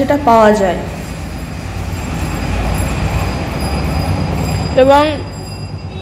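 A loud rumbling noise lasting about four seconds, swelling toward the middle and easing off, with no clear pitch or rhythm.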